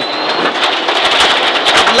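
Subaru Impreza N14 rally car's turbocharged flat-four engine running hard at speed on a gravel stage, heard inside the cabin, with a dense clatter of gravel striking the underbody and wheel arches.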